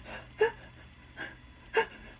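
A woman's short, frightened gasps, four in quick succession, the second and last the loudest: acted panicked breathing, the loud scared breathing of a horror-movie victim trying to hide.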